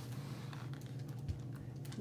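Faint scattered light ticks and taps of hands handling a picture book's pages, over a low steady hum.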